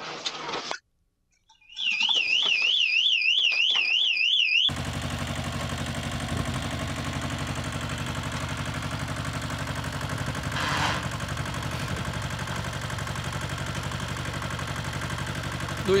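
An electronic alarm warbling rapidly, rising and falling about four times a second, for about three seconds. Then, from about five seconds in, a small Shibaura compact tractor's diesel engine running steadily as it drives over loose gravel.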